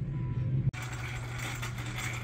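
Store background noise: a steady low hum under a diffuse hiss, broken by a sudden cut less than a second in.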